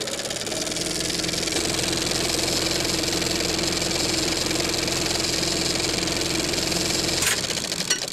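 Sound effect for an animated production-company logo: a steady mechanical whir with a held humming tone, which cuts off with a click about seven seconds in.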